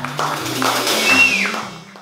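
Live jazz band music with stepping bass notes, fading out near the end.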